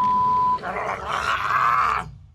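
A censor bleep, a steady tone of about half a second, followed by a rough, rasping sound lasting over a second.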